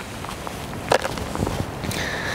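Handling of plastic golf discs: one sharp click about a second in, then a few softer knocks, over a steady background hiss.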